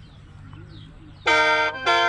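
Khaen, the bamboo free-reed mouth organ, starting to play about a second in: several reeds sounding together in a sustained chord, broken once briefly before it resumes.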